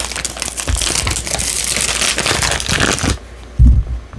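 Foil blind-bag packaging crinkling and tearing as it is ripped open by hand, a dense run of crackles that stops about three seconds in. A short dull thump follows near the end.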